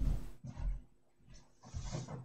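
A brief rustle, then a few dull, irregular low thumps of a person walking away across a room.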